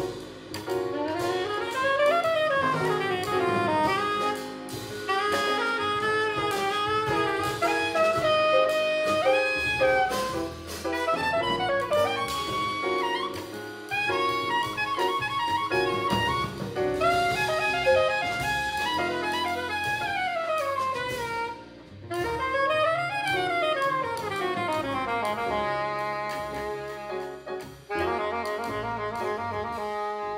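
Live small-group jazz: a soprano saxophone solos in fast runs that sweep up and down, over upright double bass and a drum kit. The music dips briefly near the end before the saxophone goes on.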